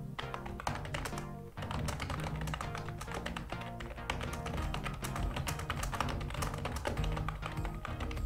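Computer keyboard typing: rapid, irregular key clicks over steady background music.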